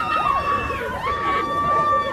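A group of women footballers screaming and cheering in celebration, with long high-pitched held screams overlapping one another.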